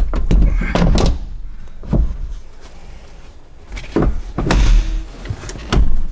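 Pontiac Aztek rear seat being set down and latched onto its floor anchors: a series of heavy clunks and thuds, with metal latches knocking as the seat snaps into place.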